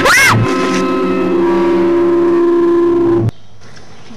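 A woman's short scream that rises and falls, over a loud, sustained droning music chord. The chord cuts off suddenly about three seconds in, leaving only faint outdoor background.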